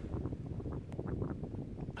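Wind rumbling on the microphone, with a few faint scattered crackles over it.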